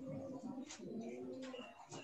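Faint cooing of pigeons in the background: low, drawn-out notes that step in pitch.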